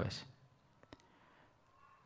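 A man's word into a close microphone trails off, then a pause that is nearly quiet apart from a few faint, short clicks around the middle.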